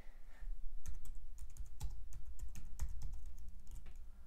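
Typing on a computer keyboard: a quick, irregular run of key clicks that starts about half a second in.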